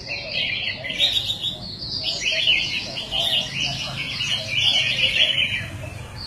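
Several caged red-whiskered bulbuls singing at once: a dense, unbroken chorus of overlapping high chirps and warbles, over a low murmur of voices.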